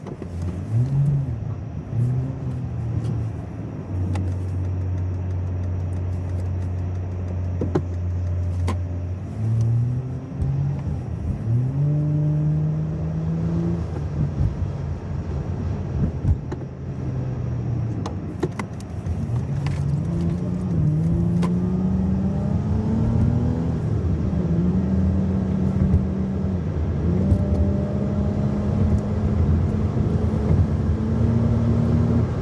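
Car engine heard from inside the cabin while driving, its note rising in several steps as the car picks up speed, with steady stretches between.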